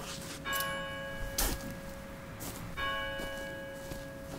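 A large bell tolling, struck twice a little over two seconds apart, each strike ringing on and slowly fading. A sharp click falls between the two strikes.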